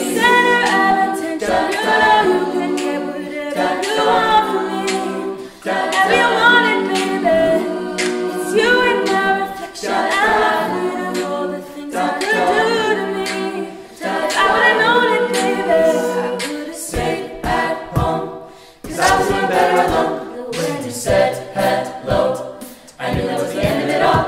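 Mixed a cappella vocal group singing close-harmony chords with no instruments. About two-thirds of the way in, a beatboxed kick drum joins, thumping in a steady beat under the voices.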